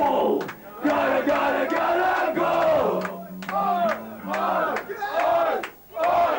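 Crowd of people shouting together in repeated bursts between songs at a hardcore punk show, with a steady low tone running underneath.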